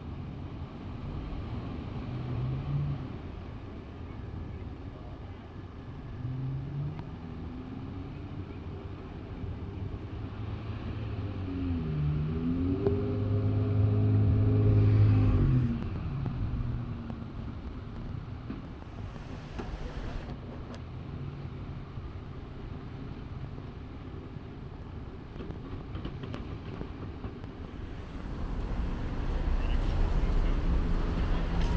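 Cars passing on the street alongside, with engine hum coming and going. The loudest is a vehicle driving close by about midway, its engine pitch sliding, which cuts off suddenly, leaving quieter outdoor traffic noise.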